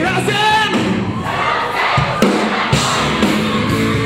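Live rock band playing loudly, with a sung lead vocal in the first second and a crowd's voices over the music.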